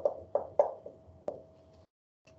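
Dry-erase marker writing on a whiteboard: a quick series of short taps and strokes as letters are drawn, with one sharper click a little past a second in.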